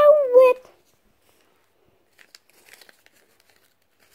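A child's high-pitched voice, briefly at the very start, then quiet with a few faint paper rustles and clicks about two seconds in.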